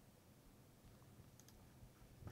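Near silence: room tone with a few faint clicks from a computer keyboard and mouse in the second half.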